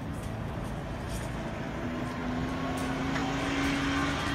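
Street traffic with a pickup truck's engine coming up close and passing: a steady engine hum comes in about halfway and grows louder toward the end, over a constant low road rumble.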